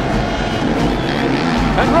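Motocross race bike engine revving through the corners, rising and falling in pitch, over a dense background of crowd noise.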